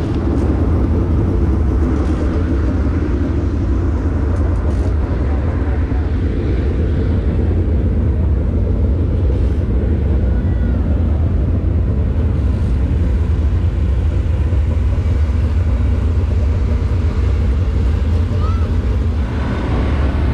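Steady low rumble of race car engines running at a dirt track, unchanging throughout.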